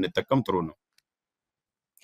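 A man speaking in short, choppy fragments for under a second, then the audio cuts out to dead silence for over a second.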